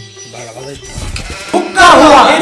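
A man's voice starts singing loudly near the end, a wavering, bleat-like 'hukka hua' in imitation of a jackal's howl. Before it, faint background music.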